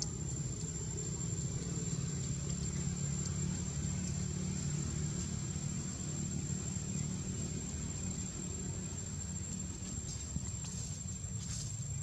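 A motor running steadily with a low hum, under a thin, steady high-pitched whine.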